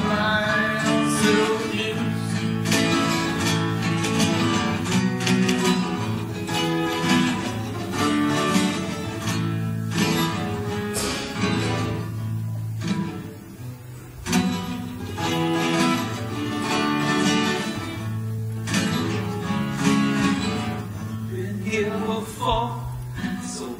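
Steel-string acoustic guitar strummed in chords, a song played live, easing off briefly a little past the middle before picking up again.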